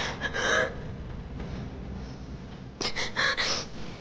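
A woman crying, drawing sharp gasping sobs in two bursts: one at the start and another about three seconds in.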